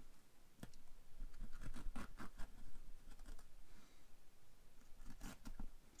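Small razor blade scratching and snagging as it cuts through taut, tough acoustic wall fabric stretched over an electrical box opening: a run of short, uneven scratches.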